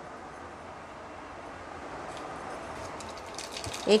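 Mustard seeds in hot oil in a small steel pot, a low steady sizzle with faint crackles that begin about two seconds in and come more often toward the end as the oil heats around the seeds.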